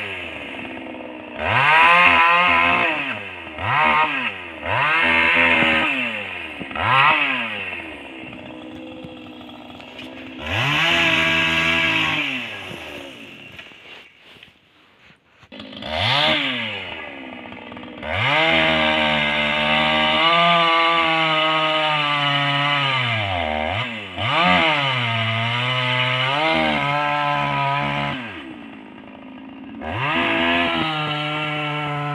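Two-stroke chainsaw revved in several quick blips and dropping back to idle, fading almost to nothing about halfway through, then running at high speed for about ten seconds with its pitch sagging and recovering as it cuts into a pine log, before easing back to idle near the end.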